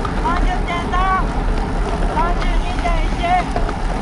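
Wind rushing over the microphone of a camera moving along at running or cycling pace, a steady loud noise. Two quick series of short, high chirps sound over it, in the first half and again later.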